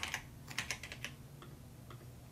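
Computer keyboard typing: a quick run of keystrokes in the first second, then a couple of fainter, sparser clicks.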